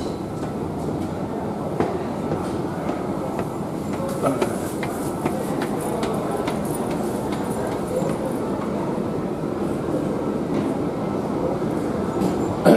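Escalator running: a steady mechanical rumble with scattered light clicks and knocks from the moving steps.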